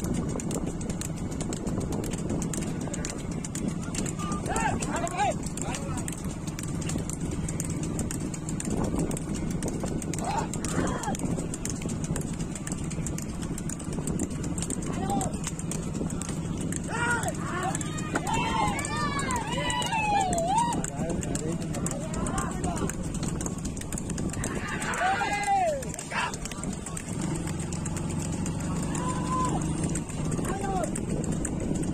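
Bulls' hooves clattering on a paved road as a pair of racing bullocks pull a flatbed wooden cart at speed, over a steady low hum. Men shout to drive the bulls on, loudest about halfway through and again a few seconds later.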